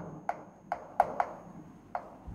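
Chalk tapping against a chalkboard while writing: about five short, sharp taps at uneven intervals as each letter is struck.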